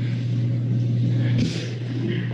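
A loud, steady low hum with a hiss of background noise over it, cutting in abruptly from dead silence just before, as an audio line opens.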